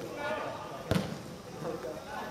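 A football thuds once, sharply, just under a second in, amid voices calling out.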